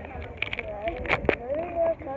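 A child's voice, high and drawn out, talking or vocalising indistinctly, with a few sharp clicks and knocks from fingers handling the camera close to its microphone.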